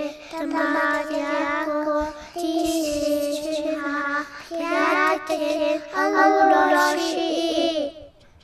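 A high-pitched voice singing a melody over intro music, in phrases with short breaks, cutting off abruptly near the end.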